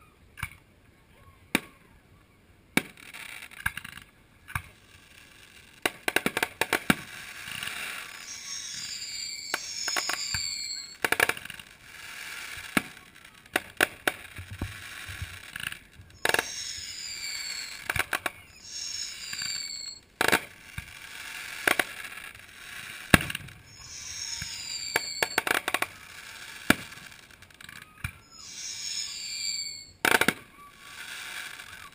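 Aerial fireworks going off: sharp bangs of shells bursting, some in quick crackling clusters, with stretches of hissing noise between them.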